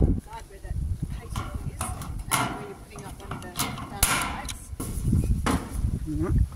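Sheet-metal downpipe elbow being handled and set down on a steel bench: scattered knocks and clicks of metal, three sharper ones spread through the middle and end.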